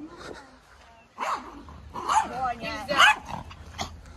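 A small dog barking and yelping in several short, high-pitched bursts, starting about a second in.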